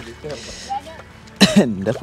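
A person's voice: a loud, drawn-out exclamation starting about one and a half seconds in, its pitch swooping down and back up.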